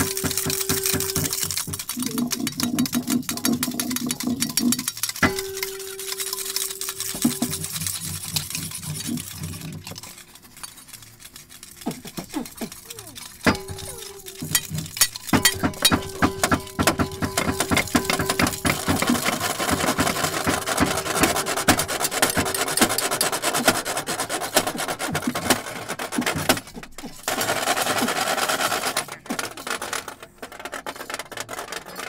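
Hand-made foley sound effects: a dense run of small clicks and clinks with rubbing and scraping noise, over a steady hum that comes and goes. The noise grows louder and more hiss-like in the last third.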